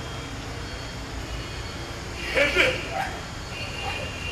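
A man's voice breaking out in one short, strained cry about two seconds in, between quieter pauses.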